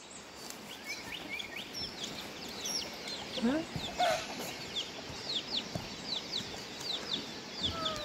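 Chickens clucking and squawking as they are chased across a yard, with a few louder calls about halfway through. Many short, high chirps carry on throughout.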